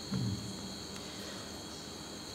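Pause in the talk: a faint, steady high-pitched background whine made of several even tones. A brief low murmur comes just after the start.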